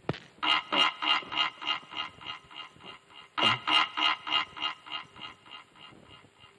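A sharp hit at the very start, then a man's loud laughter in two long runs of evenly spaced 'ha's, about three a second, each run fading out.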